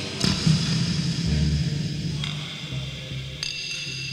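The closing moments of a 1980s German heavy metal demo recording: a chord dies away after a couple of drum hits. High, steady ringing tones then come in about two seconds in and again near the end as the song fades.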